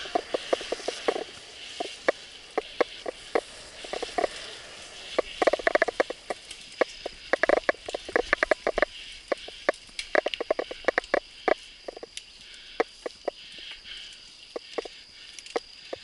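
Mountain bike rattling and clicking in irregular bursts as it rolls over a rough dirt trail, over a steady chorus of insects.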